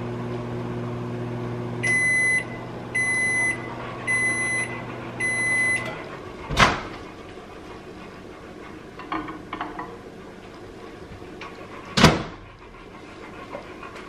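Microwave oven running with a steady low hum, then four beeps about a second apart as the cooking cycle ends and the hum stops. A sharp clack follows as the door is opened, and another about five seconds later as it is shut.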